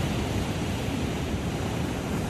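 Surf breaking and washing up a sandy beach in a steady rush, mixed with wind on the microphone. The sea is still only moderately rough, not yet stirred up by the approaching hurricane.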